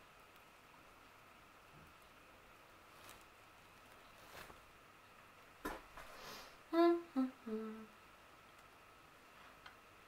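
A quiet room with a faint steady whine; about six seconds in, a click and a brief hiss, then a woman hums three short notes through closed lips while a suction lip-plumper cup is sealed on her mouth.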